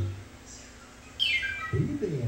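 Cartoon sound effects from a Nick Jr. TV bumper, played through a TV's speakers in a room. After a quiet moment, a quick run of falling whistle-like notes comes about a second in, followed by a low swooping tone near the end.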